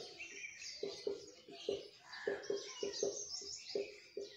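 Marker pen writing on a whiteboard: a run of short squeaks and scratchy strokes as each letter is drawn.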